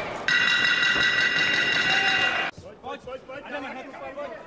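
A ringside end-of-fight signal: a steady, high-pitched ringing tone for about two seconds as the referee stops the bout after a knockout, cut off abruptly.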